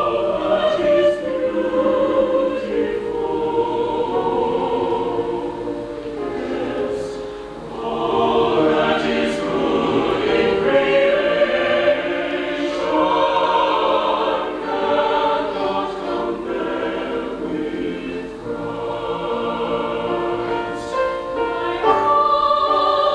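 Mixed chamber choir singing a choral piece, holding sustained chords in several parts. The sound eases briefly about seven seconds in, then swells again.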